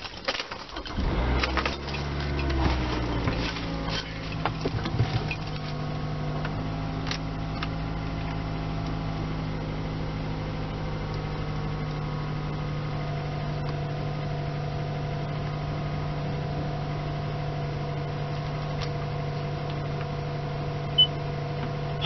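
Car engine heard from inside the cabin: uneven at first, the pitch settling down over the first few seconds, then a steady idle hum. A single sharp click comes about a second before the end.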